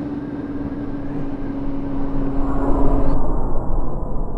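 Motorcycle engine, a Yamaha YZF-R6 inline-four, running steadily at cruising speed under wind rush, heard on the move. The sound grows a little louder, then cuts off about three seconds in.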